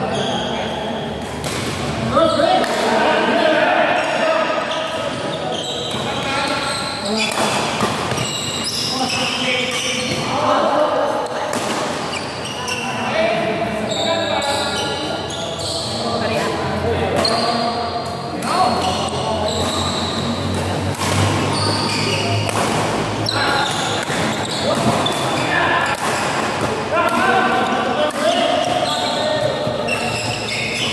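Badminton rally in a large indoor hall: sharp, irregular smacks of rackets striking the shuttlecock. Onlookers talk and call out throughout.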